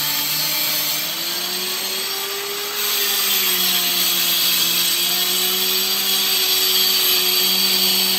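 Handheld electric tile cutter (angle-grinder type) cutting a large glossy floor tile, with a steady whine under a harsh hiss; it gets louder about three seconds in as the blade bites deeper.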